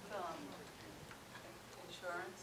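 Faint speech from a person away from the microphone, loudest about the first half second, then fading to a low murmur.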